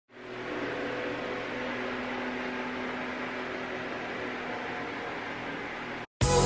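Steady room tone: an even hiss with a faint low hum, like an appliance or fan running. It fades in over the first half second and cuts off suddenly at the end.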